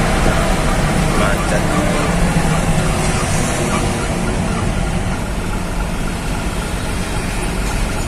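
Truck engine running, heard from inside the cab while the truck crawls through traffic; the steady low engine noise eases slightly toward the end.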